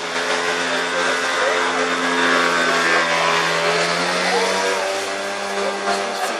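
A motor vehicle's engine running steadily as it passes, a hum that holds one pitch for about five seconds and then fades.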